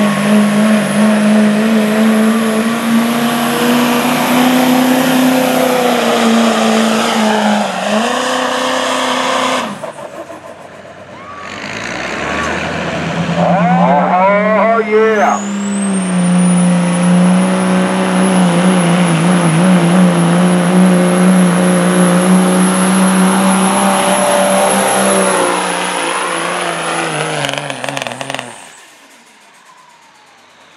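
Diesel pickup trucks pulling a weight-transfer sled at full throttle. The first, a Duramax-powered Chevrolet Silverado, runs hard, then eases off and cuts out a little under ten seconds in. After a brief lull a second diesel truck builds power, its high turbo whistle rising and then holding over the steady engine note until it shuts down near the end.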